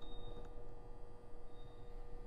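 Pause with faint room tone: a low steady hum with a thin constant tone running through it.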